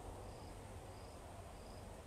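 A cricket chirping faintly, a short high chirp about twice a second, over a low steady room hum.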